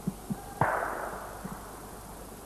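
A single gunshot a little over half a second in: a sudden crack followed by a tail that dies away over about a second. Soft low thumps come now and then around it.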